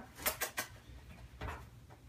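A few light clicks and taps of a baby spotted hyena's claws and paws on the dryer's drum and front lip as it shifts about inside the dryer: a quick cluster in the first half-second and one more about a second and a half in.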